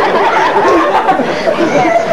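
Overlapping voices: several people talking at once in a steady murmur, with no single clear speaker.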